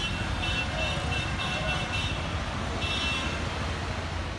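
City street ambience: steady traffic noise with short runs of high, thin tones about half a second in and again near the end.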